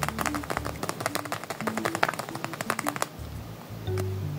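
A tape-covered paper squishy being squeezed and handled, giving rapid crinkling crackles that stop about three seconds in. Soft background music with notes and a bass line plays underneath.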